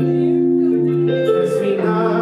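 Live song: a male vocalist singing long, sustained notes into a microphone over instrumental accompaniment.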